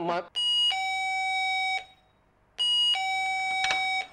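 Two-tone doorbell chime rung twice: each ring is a short high note falling to a longer, lower held note (ding-dong), about two seconds apart.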